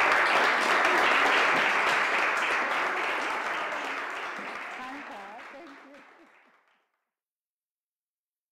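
Audience applauding, a dense patter of many hands clapping that fades away and is gone about seven seconds in, leaving silence.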